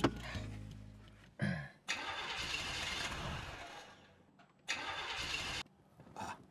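Car engine cranking on its starter without catching. A first crank of about two seconds fades away, then a second, shorter crank cuts off suddenly. The car refuses to start because its fuel tank is empty.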